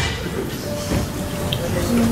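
Room sound of a meeting hall with faint murmured voices over a low steady rumble, much quieter than the loud noisy stretch just before.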